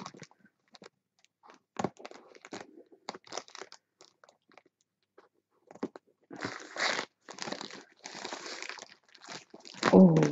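Thin plastic mailer bag crinkling as it is cut with scissors and pulled open. Scattered crackles come first, then a denser rustle over the last few seconds.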